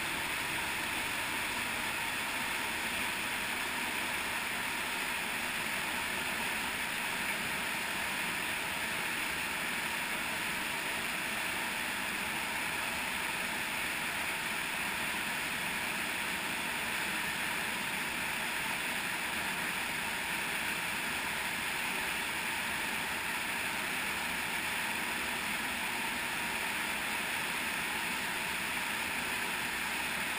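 Steady rush of a cave stream pouring over small waterfalls into pools in a limestone streamway.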